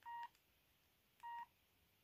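Keypad beeps of a Range Rover mini Chinese mobile phone: two short, steady electronic beeps about a second apart as its buttons are pressed to work a menu.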